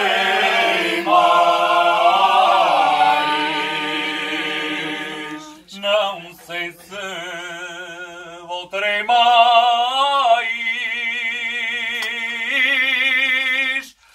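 A group of men singing unaccompanied in the Alentejo polyphonic style (cante alentejano), with long held notes and vibrato. Around the middle the singing thins out, with short breaks, until the voices swell back in together.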